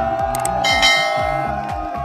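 Background music with a steady beat, with a bright bell chime a little over half a second in: a subscribe-button notification bell sound effect.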